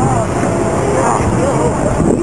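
Indistinct talking by several people over a steady background noise.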